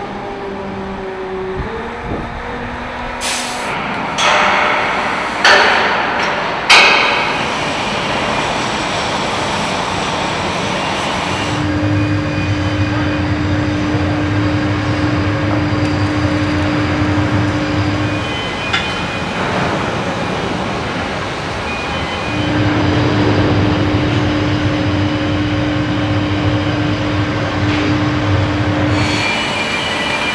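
Engine assembly line machinery noise: a few short, loud hissing bursts early on, then a steady machine hum with a held tone that runs for several seconds, stops, and starts again.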